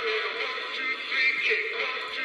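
Gemmy Peppermint Spinning Snowman animated figure playing its song through its small built-in speaker: a recorded singing voice over music, thin and tinny with almost no bass.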